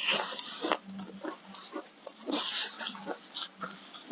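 Close-miked chewing of a mouthful of shaved ice: crunching and mouth sounds in uneven bursts with small clicks, loudest at the start and again a little past the middle.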